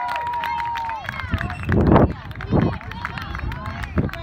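Sideline spectators shouting at a youth soccer match: one voice holds a long call for about a second at the start, then two loud bursts of shouting come about two seconds in.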